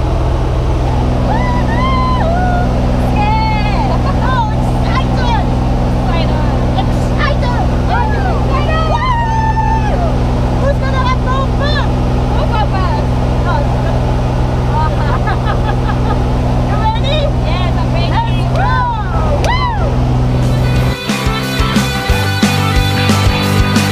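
Small plane's engine droning steadily inside the cabin during the climb, with voices talking over it. About a second before the end the drone cuts off and rock music comes in.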